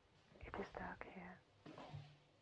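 A voice whispering a short phrase of narration, two groups of syllables with a brief pause between them.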